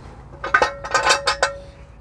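A half-dozen quick metallic clinks of a steel half-inch extension against the inner tie rod removal tool, with a brief metallic ring under them.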